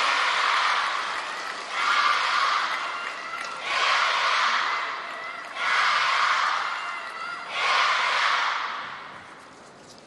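Arena crowd shouting in unison, a rhythmic cheer in five loud swells about two seconds apart that fades away near the end.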